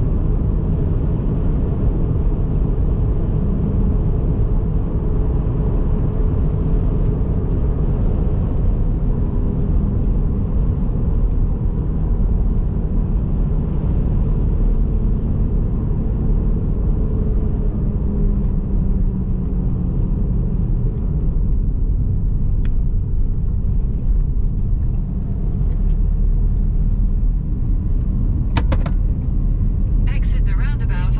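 Steady low road and engine rumble inside a car driving along a dual carriageway.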